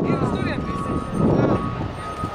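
Glass harp of drinking glasses played by rubbing the rims: held, ringing single notes that change pitch twice, over a steady rumble of street noise.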